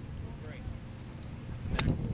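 A golf club strikes a range ball off the turf once, a single sharp crack near the end, over a low background rumble.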